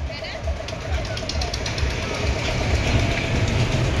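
Fairground spinning ride's machinery running at low speed: a steady low rumble with a faint, fast, even clatter. The ride is in its slow opening turns, not yet brought up to speed.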